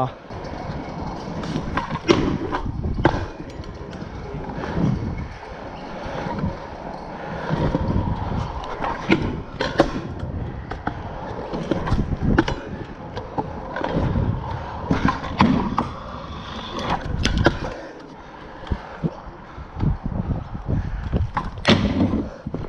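Stunt scooter wheels rolling over rough concrete, a steady grinding roll broken by many sharp knocks as the deck and wheels hit the ground and ledges.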